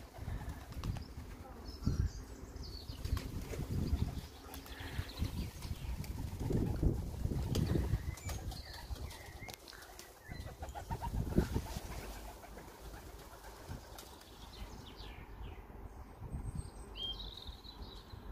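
Young racing pigeons' wings flapping in irregular bursts as the birds fly about and land.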